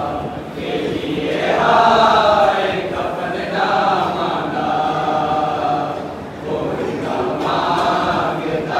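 Men chanting a noha, a Muharram lament, together: a lead reciter sings into a microphone and the group joins him in long held notes, with a short dip about six seconds in.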